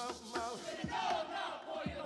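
Many voices chanting and calling out together, as in a hula performance, over a low beat that falls about once a second.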